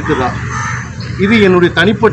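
A bird call in a brief pause about half a second in, followed by a man talking.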